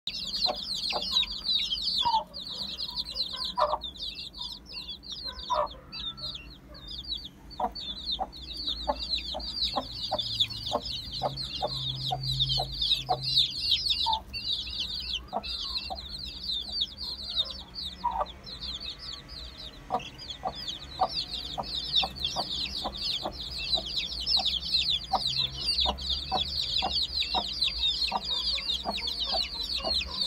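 A brood of ten-day-old Aseel chicks peeping continuously in a dense chorus of high, quickly falling chirps, with the mother hen giving short, low clucks that repeat about twice a second for much of the time.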